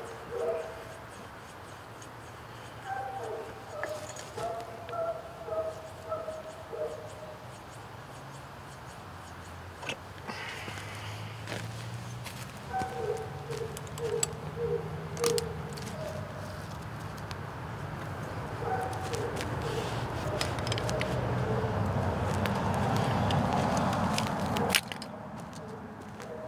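Traffic noise from a nearby road swells through the second half and is loudest near the end, with a few sharp metallic clicks as a ratchet strap is worked loose from a tree. Runs of short pitched animal calls are heard near the start and in the middle.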